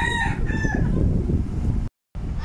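A rooster crowing, the long held end of its crow trailing off under a second in, over a low background rumble. The sound cuts out abruptly for a moment near the end.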